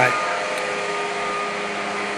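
A steady mechanical whir with faint, even humming tones running under it, unchanging throughout.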